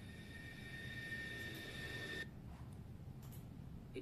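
A faint, steady high-pitched whine played back through a phone's speaker, cutting off suddenly a little after two seconds in, over a low background rumble.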